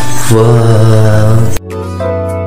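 Pop ballad cover: a sung 'wooh' ad-lib over the backing track, which breaks off suddenly about one and a half seconds in and leaves quieter, sustained instrumental accompaniment.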